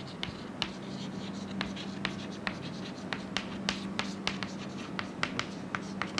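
Chalk on a chalkboard while a word is being written: quick irregular taps and scratches of the chalk tip, a few per second, over a steady low hum.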